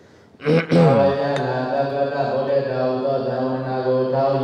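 A Buddhist monk's voice chanting Pali scripture in a steady, drawn-out tone, starting about half a second in and held at a near-level pitch.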